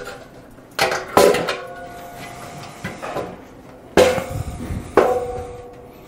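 Aluminum loading ramps knocking together as one is turned and fitted against the other: several sharp clanks, each ringing on briefly with a metallic tone.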